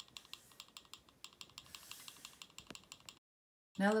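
TriField TF2 EMF meter's audio in RF mode, giving rapid, uneven clicks as it picks up radio-frequency pulses from the smartphone beside it. The sound cuts out to dead silence just after three seconds in.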